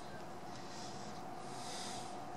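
Soft breathing through the nose, two hissy breaths about a second apart, over a faint steady tone.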